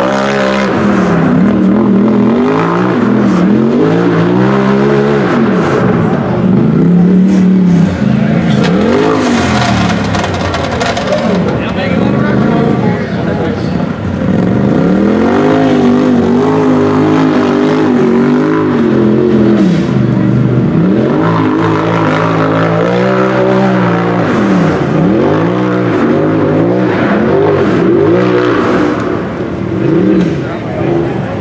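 Race UTV engine revving hard on a steep hill climb, the throttle worked on and off so the pitch rises and falls again and again. It eases off just before the end.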